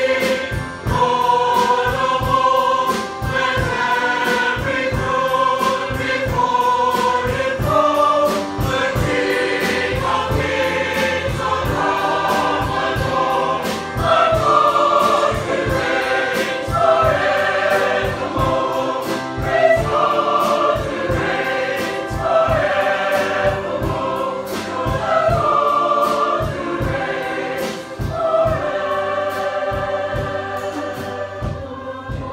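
Mixed-voice choir singing a hymn arrangement in full harmony, held notes moving through changing chords, accompanied by keyboard and a steady drum-kit beat.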